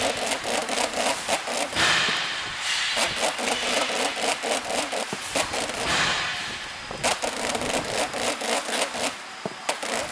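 Blue protective plastic film being applied to aluminium discs on a film-covering machine, giving dense, rapid crackling over a steady machine running underneath. Hissy swells come about two seconds in and again about six seconds in.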